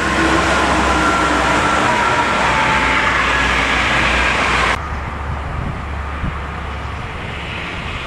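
Highway traffic: a loud steady roar of vehicles passing on the toll road, which drops off suddenly about five seconds in to a quieter, low traffic rumble.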